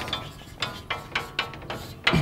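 Chalk writing on a blackboard: a quick run of short taps and scrapes as the strokes of a few characters go down.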